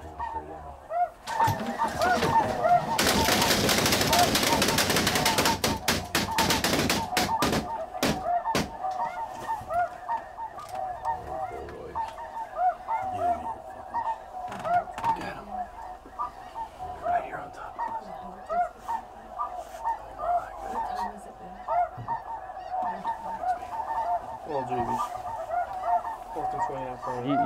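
A large flock of snow geese calling, a dense chorus of honks that runs on throughout. About a second in, a loud burst of noise with many sharp cracks rises over the calling, heaviest from about the third to the sixth second, then thins out to scattered cracks and stops a little before the ninth second.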